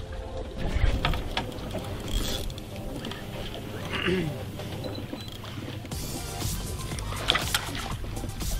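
Wind and water noise on an open fishing boat, a steady low rumble with scattered clicks and knocks.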